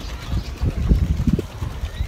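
Wind buffeting the phone's microphone: an irregular, gusty low rumble.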